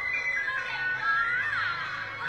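A young girl singing a Vietnamese folk song in a high voice that glides and bends through ornamented notes.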